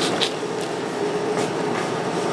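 Steady whooshing hum of laser hair-removal equipment running, with one constant mid-pitched tone.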